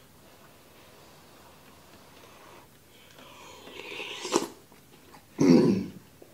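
A person noisily slurping a spoonful of hot fish egg soup from a wooden spoon, the slurp building over a second and ending with a sharp smack. A short, loud throaty burst, like a cough or a heavy exhale, comes near the end.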